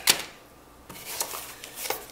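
Unboxing packaging being handled: a sharp plastic rustle-clack at the start as a bagged camera strap is set down on a tiled table, then a short lull and several light clicks and rustles as hands work inside a cardboard box.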